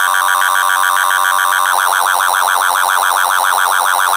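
Riddim dubstep track in a breakdown: a held synth chord warbling rapidly in pitch, several wobbles a second, with no bass or drums under it. The warble grows deeper partway through.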